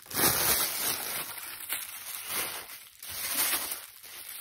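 White tissue paper crinkling and rustling as it is pulled off a wrapped cup, in several uneven surges, the loudest just after the start.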